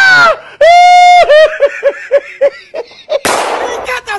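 A high-pitched voice holds a long cry and then breaks into a run of short laughing notes, about four a second, dying away. Near the end a sudden loud burst of noise like an explosion sound effect.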